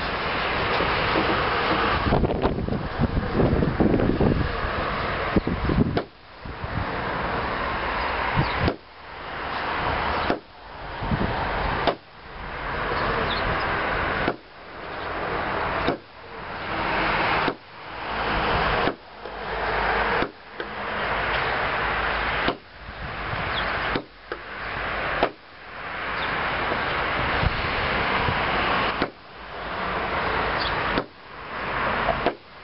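Knife chopping a braided cord into pieces on a wooden table: about fifteen sharp knocks of the blade through the cord onto the wood, one every second or two from about six seconds in. Steady wind noise runs on the microphone, and each knock is followed by a brief dip in level.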